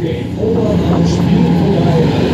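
Fairground ride machinery running with a steady low hum, mixed with a voice over the ride's loudspeakers.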